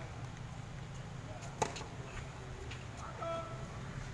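A tennis racket striking the ball once, a sharp crack about a second and a half in, followed by a few fainter knocks of the ball. A steady low hum and faint distant voices lie underneath.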